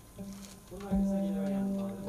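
The opening of a song: a held, organ-like keyboard note comes in about a second in and holds steady.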